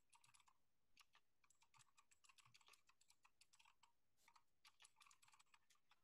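Faint computer keyboard typing: a run of quick keystrokes entering a short terminal command, with a couple of brief pauses.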